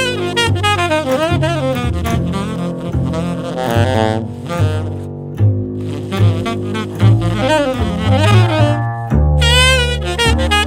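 Jazz blues duo of tenor saxophone and plucked upright double bass: the saxophone plays fast improvised runs with bent notes over a steady bass line.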